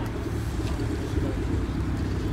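Steady low rumble of a car engine idling close by.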